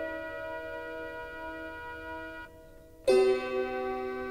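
Slow, medieval-style harp music: a plucked chord rings and dies away almost to silence, then a new chord is plucked about three seconds in.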